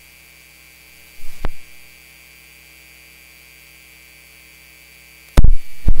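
Steady electrical mains hum on the microphone feed, with a soft knock about a second and a half in and a loud thump on the microphone near the end.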